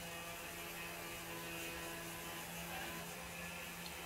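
Steady low electrical hum with a faint hiss, a room tone with no other event standing out.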